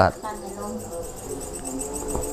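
Crickets chirping: a high, evenly pulsing trill that runs on steadily.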